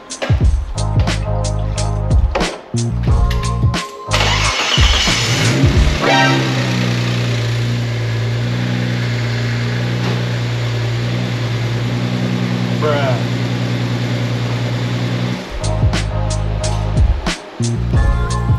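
Background music, then about four seconds in the Audi B5 S4's 2.7-litre twin-turbo V6 cranks and starts, the first start after the engine was refitted. It settles into a steady idle and is shut off suddenly about nine seconds later, and the music resumes.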